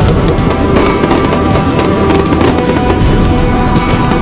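Fireworks popping and crackling in quick succession over loud music with a steady beat.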